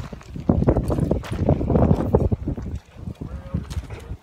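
Loud rumbling and rustling of a phone being jostled close to its microphone while a loose brick is picked up, from about half a second in until near three seconds.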